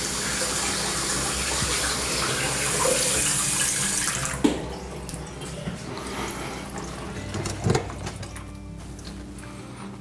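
Bathroom sink faucet running, water rushing into the basin and down through a newly installed P-trap as a leak test; the rush cuts off about four and a half seconds in, leaving a quieter trickle of draining water.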